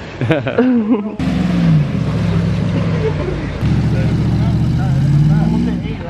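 A brief bit of a woman's voice, then from about a second in the pickup truck's engine runs under load as it pushes the boat over the sand, its pitch sagging and then climbing again near the end.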